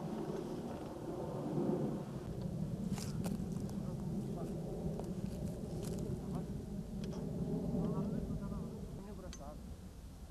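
Indistinct voices of people talking in the background over a low steady rumble, with a few sharp clicks about three and six seconds in.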